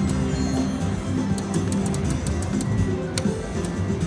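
Video slot machine playing its game music while the reels spin on a bonus-feature spin, with a quick run of sharp clicks and ticks from about a second and a half in.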